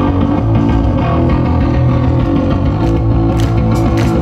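Live rock band: electric guitar and bass guitar playing loud, sustained notes through stage amplifiers as the song begins, with drums and cymbals coming in a little over three seconds in.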